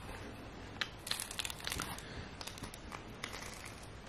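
Crinkling and crackling of an ice pack's plastic wrapper as it is handled. There is a dense flurry of sharp crackles about a second in, then scattered crackles.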